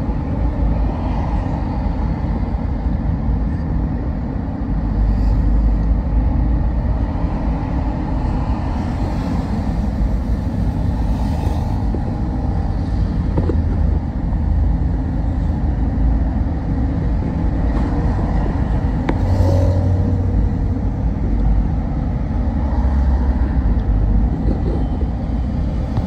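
Road and engine noise heard inside a moving car's cabin: a steady low rumble, with a few brief swells of hiss as other vehicles go by.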